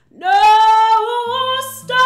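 A woman singing a loud, held note that scoops up into pitch and then sustains, in a soul/jazz style. Low plucked acoustic guitar notes come in under it about a second in, and near the end she takes a quick breath and moves to the next note.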